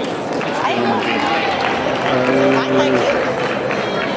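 Crowd chatter in a large hall: several voices talking at once, none close or clear enough to make out words.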